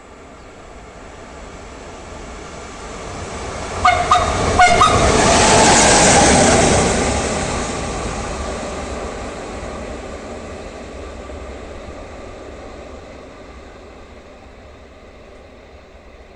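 Train passing without stopping, sounding two short horn blasts about four seconds in. Its rumble swells to a peak a couple of seconds later, then fades steadily as it moves away.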